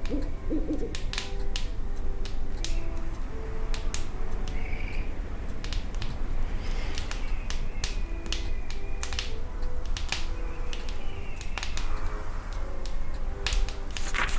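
An owl hooting near the start, over the steady crackle and pops of a wood fire burning in a stove and a soft, slow melody of short notes from a radio.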